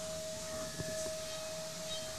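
High-speed spindle of a DATRON CNC milling machine spinning with its cutter, a steady high whine at one unchanging pitch.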